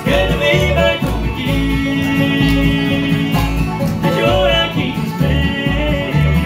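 Live bluegrass band playing: strummed acoustic guitar over an upright bass pulsing steadily about twice a second, with voices singing in close harmony, including one long held note.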